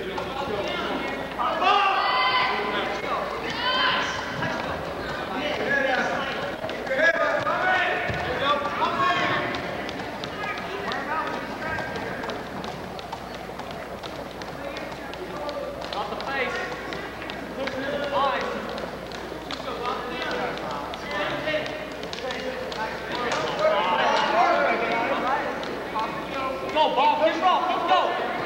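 Overlapping shouts and yells from spectators and teammates urging on a wrestler, loudest in the first few seconds and again near the end, with a quieter stretch in between.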